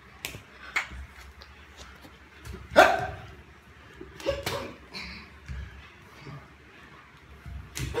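Play-sparring: scattered sharp slaps of hands and feet on a tiled floor, with one loud, short yelp-like cry falling in pitch about three seconds in and a smaller one a little later.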